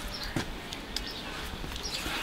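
A few faint taps and ticks from a knife and cut shark fins being handled on a bench top, over a low outdoor background.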